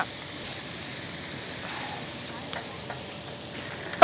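Hot oil sizzling steadily in a large wok as food deep-fries, with a faint click about two and a half seconds in.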